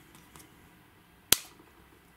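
A single sharp click about a second and a half in, from a hand working the e-bike's electrical switches and connectors.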